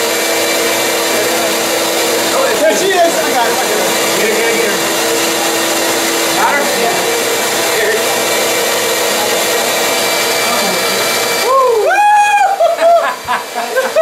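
Bee vacuum running steadily with a hum, sucking honey bees off the comb through its hose. Near the end a man's excited voice exclaims over it.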